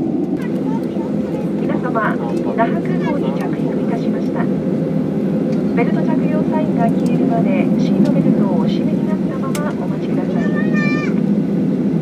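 Steady airliner cabin noise during final approach: the engines and the airflow heard from inside the cabin. Passengers' voices come through now and then.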